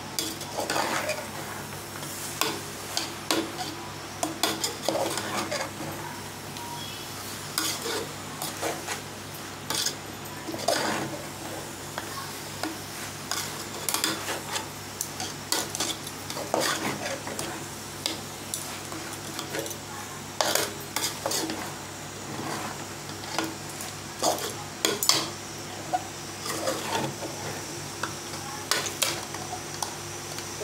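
Metal slotted spoon scraping and clinking irregularly against an aluminium cooking pot as chicken, onions and tomatoes are stirred in masala, with a frying sizzle and a steady low hum underneath.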